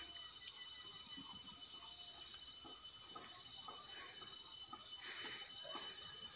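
Quiet outdoor ambience: a faint steady high-pitched tone with soft scattered rustles and ticks.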